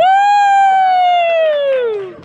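A long, loud, high-pitched "woooo" cheer from a single voice, held steady and then falling in pitch near the end.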